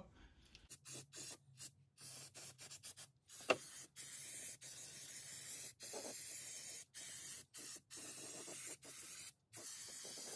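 Aerosol can of rubberized undercoating spraying in a string of short and longer hissing bursts with brief pauses between. There is one sharp tick about three and a half seconds in.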